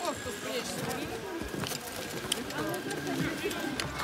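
Faint voices of several people talking and calling out in the distance, with scattered light clicks.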